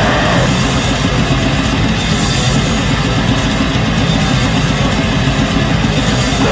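Heavy metal with distorted guitars and fast, dense drumming, loud and unbroken.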